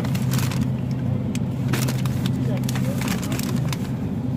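Plastic bags of peeled garlic being handled, giving a few short sharp crinkles over a steady low hum.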